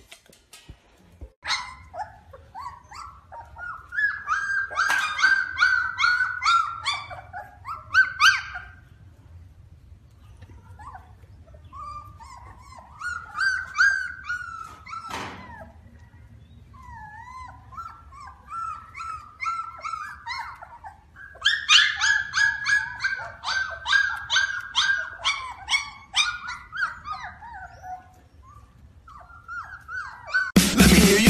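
Husky puppies whining and yipping. There are high-pitched runs of quick yips, with longer whines between them that rise and fall in pitch.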